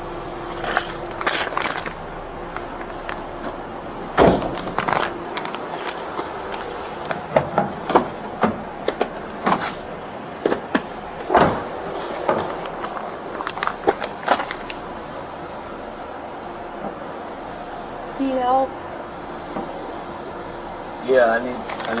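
Knocks, clunks and rustling from handling a patrol car: a loud thump about four seconds in, and the rear passenger door being opened about halfway through, over a steady hum.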